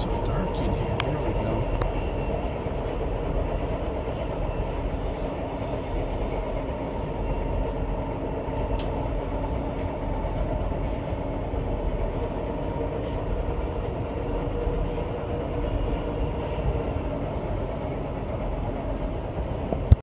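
Metro train running at speed, heard from inside the railcar: a steady noise of the wheels on the rails with a steady whine over it, and a few faint clicks near the start.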